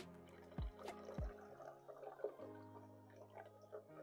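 Soft background music with sustained notes, and faintly under it sparkling water pouring from a plastic bottle into a glass jug and fizzing. Two low knocks about half a second apart come in the first second and a half.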